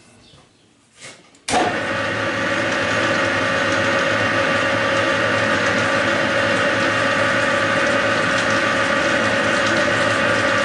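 Metal lathe switched on about one and a half seconds in, spinning a four-jaw chuck; its motor and gearing then run at a steady speed with a steady whine.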